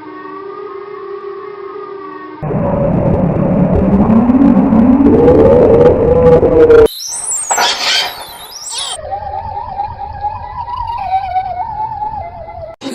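A string of edited-in comic sound effects that cut abruptly from one to the next: a steady pitched tone, then a loud noisy stretch with a rising glide, then high siren-like sweeps, then a wavering whistle-like tone.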